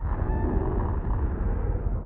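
A deep, steady rumble from a horror TV episode's soundtrack, heaviest in the lowest bass. It starts and stops abruptly.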